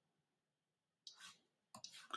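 Near silence: room tone, with a faint hiss about a second in and a few soft, short clicks near the end.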